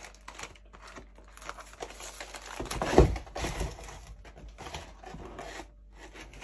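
Cardboard food boxes handled and turned over on a countertop: irregular rustling and light clicks, with a louder knock about three seconds in.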